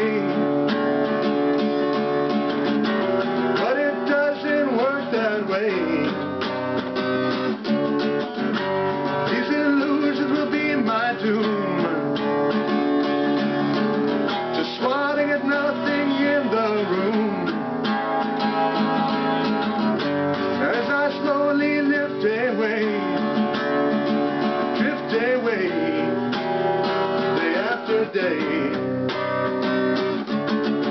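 Acoustic guitar strummed steadily as song accompaniment, with a man's voice singing over it at times.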